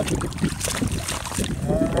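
Wind rumbling and buffeting on the microphone, with water swishing as a hand reaches into shallow seawater among seagrass.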